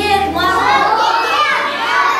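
A group of young children's voices calling out together, loud and overlapping.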